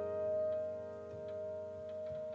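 A soft piano chord left ringing and slowly fading in a quiet passage of slow relaxation piano music, with a few faint ticks.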